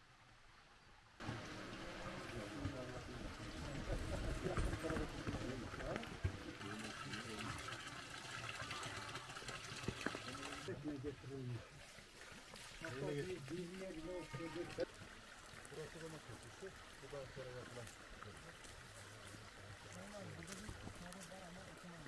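Water running and splashing steadily from a stone village fountain under the indistinct talk of a group of people. The water sound stops abruptly about eleven seconds in, leaving the voices.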